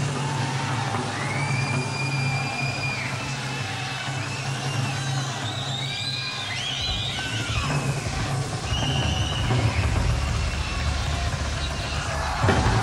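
Live rock band playing an instrumental passage, heard on an audience tape in a large hall: high notes bend and glide up and down over a steady low bass note. A deeper, fuller low end comes in about seven seconds in.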